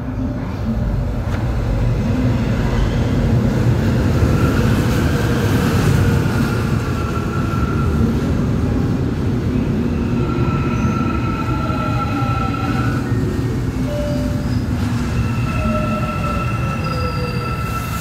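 Busan Metro Line 1 electric train pulling into a station, a loud steady rumble of wheels on rail with high squealing tones. Its motor whine falls in pitch as it slows.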